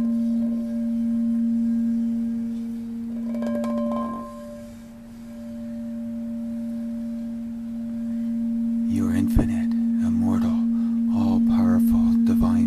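Crystal singing bowl being sung by a mallet rubbed around its rim: one steady hum with a fainter, higher ring above it. It dips in the middle and swells again over the last few seconds.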